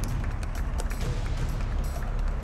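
Background music score with a steady beat over a heavy bass.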